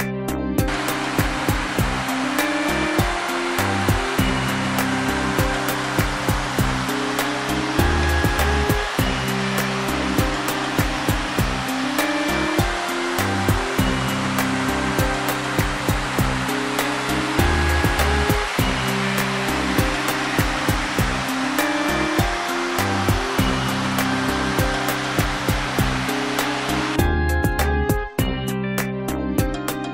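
Steady rush of a waterfall pouring into its pool, mixed with background plucked-guitar music. The water sound comes in about half a second in and cuts off about a second before the end, while the music carries on.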